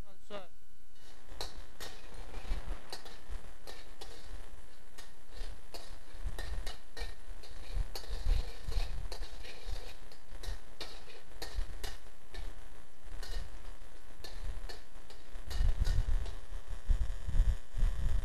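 Minced garlic sizzling in hot oil in a wok while it is stir-fried, a metal spatula scraping and clicking against the wok again and again, with a few dull bumps near the end. The garlic is frying until fragrant.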